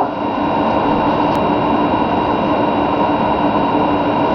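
Steady hiss with a faint hum, unbroken throughout, of the kind a fan, air conditioner or the recorder's own noise makes.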